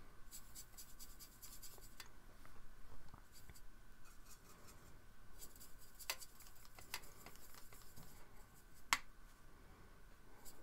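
Watercolour brush scrubbing and swirling in the wells of a plastic palette, in scratchy spells with a few sharp clicks, the loudest about nine seconds in.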